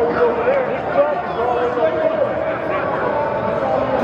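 Men's voices talking and calling out, overlapping, in a large indoor hall, with no single clear speaker.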